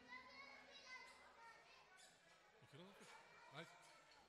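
Near silence in a large hall after the music stops: faint, scattered voices of guests, with two short gliding voice sounds, like a child's, near the end.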